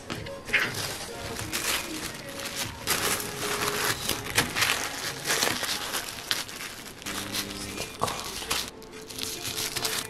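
Thin white wrapping paper crinkling and rustling in repeated handfuls as it is folded around a stack of leather coasters. Soft background music plays underneath.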